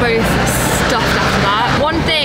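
Steady road and engine rumble inside a camper van's cabin, with a woman's voice over it.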